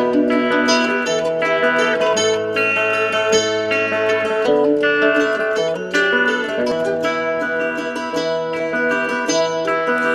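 Instrumental break in a Tibetan dranyen song: a plucked lute plays a quick melody of short picked notes over a steady backing, with no singing.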